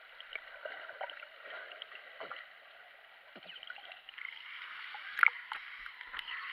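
Underwater sound heard through an action camera's waterproof housing: a muffled hiss of moving water with scattered small bubble clicks. It grows louder in the last two seconds, with a few sharp splashy clicks as the camera nears the surface.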